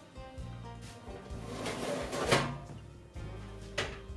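Quiet background music with a rising whoosh that cuts off a little after halfway, then the click of an Electrolux oven door being pulled open near the end.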